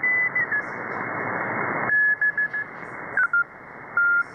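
Morse code keyed as short on-off beeps, heard through a shortwave receiver in upper sideband over a hiss of band noise. The beep pitch steps down twice as the receiver is retuned, and the hiss falls away sharply about halfway through. It is believed to be W1AW's daily Morse code practice transmission.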